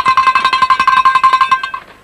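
Short bell-like sound-effect sting: a sustained ringing tone with several overtones over fast, even ticking, cut off abruptly near the end.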